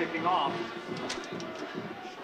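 Open-air football stadium ambience, a steady low hubbub, with a brief snatch of a man's voice just after the start.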